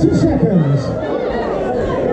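Spectators shouting and chattering, with one loud voice calling out at the start, its pitch falling.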